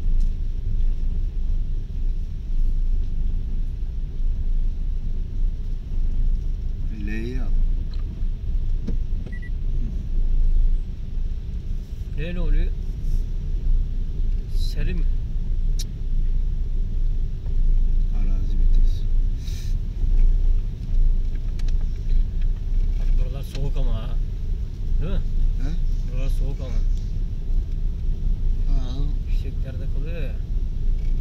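Car cabin rumble from the tyres rolling over a cobblestone road: a steady low drone, with faint voices now and then.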